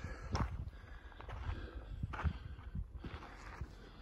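Footsteps on loose sandstone slabs and rubble, a few separate steps.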